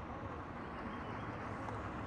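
Faint, steady low rumble of distant vehicle engines under outdoor background noise.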